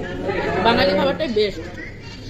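Indistinct voices talking: background chatter in a room.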